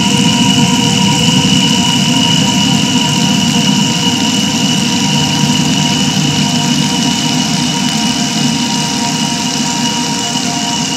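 A loud, steady engine-like drone with a rumbling low end and a few sustained high tones, part of an experimental film soundtrack.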